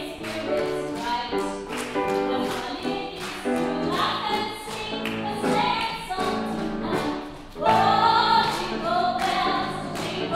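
Live solo female singing with grand piano accompaniment, the voice's pitch wavering in vibrato. About two-thirds of the way through, the voice swells to a loud, sustained phrase over the piano.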